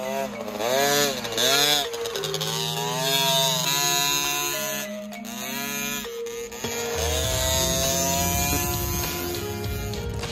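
Background music over a KTM 50 SX mini motocross bike's small two-stroke engine revving up and down again and again, with a low rumble coming in from about seven seconds in.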